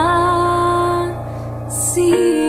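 Slow hymn music: one held note lasts about a second and then fades, and a short hiss comes just before the next notes begin.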